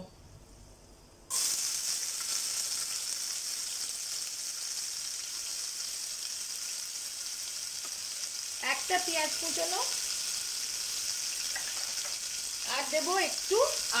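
Sliced onions dropped into hot oil in a pressure cooker, setting off a steady sizzle that starts suddenly about a second in.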